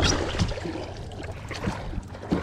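Seawater splashing and lapping against the side of a small boat as a hand is dipped in. It is loudest at the start and grows fainter within the first second, with a few small knocks.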